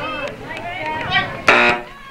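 Voices calling out during a soccer game, with one loud shout about a second and a half in.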